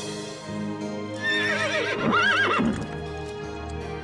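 A horse whinnying: one quavering neigh starting about a second in and lasting about a second and a half, over background music.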